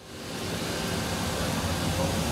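Miyano BNJ-42SY CNC lathe running with coolant streaming inside its enclosure: a steady rush of flowing coolant over a low machine hum, fading in over the first half second.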